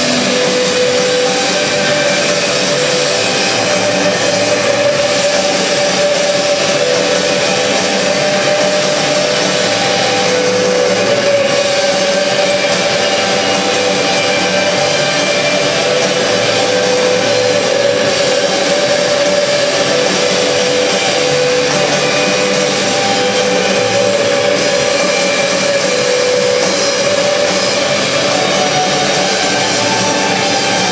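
Shoegaze/noise rock band playing live: a dense, steady wall of distorted electric guitar with long sustained notes.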